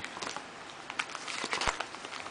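Paper CD sleeves rustling and crinkling as a stack of disc sleeves is leafed through by hand, with scattered small clicks and a sharper knock near the end.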